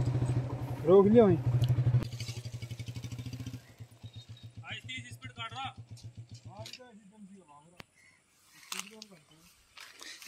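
Motorcycle engine idling with an even pulse. It drops to a quieter idle about a third of the way in and cuts off about two-thirds of the way through, with brief snatches of men's voices between.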